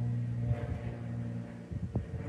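A steady low mechanical hum, like an engine running nearby, that fades away shortly before the end, followed by a single short tap.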